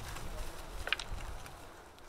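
A hand flat cutter (ploskorez) scraping a furrow through soil and wood-chip mulch. The scraping is rough and uneven, with a sharper scrape about a second in, and fades toward the end.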